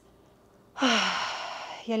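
A woman's long audible sigh: a brief voiced 'oh' that slides down into a breathy out-breath, fading over about a second. It is a deliberate deep exhale in a yoga breathing cue.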